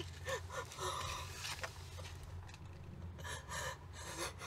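A woman crying: short gasping sobs and breaths, the strongest near the start, over a low steady hum.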